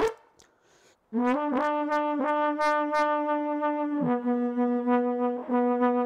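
A solo horn with a brass tone plays a slow melody. After a pause of about a second it sounds a few short, tongued notes, then holds a long note, then drops to a lower held note.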